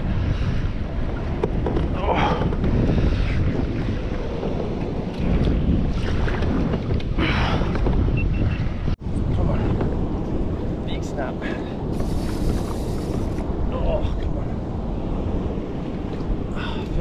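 Wind buffeting the microphone in a steady low rumble, over choppy sea washing around a kayak. The sound drops out for an instant about nine seconds in.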